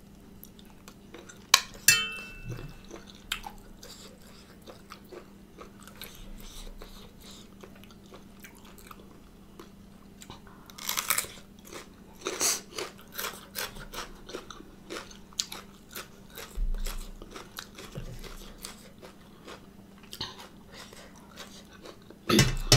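Close-up eating sounds: two sharp clicks about a second and a half in, then from about eleven seconds a run of crunchy bites and chewing of a raw red radish.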